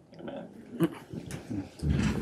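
Soft rustling, creaks and scattered knocks of people sitting back down into padded chairs at a desk, with one sharp click a little under a second in and a louder low rumble starting near the end.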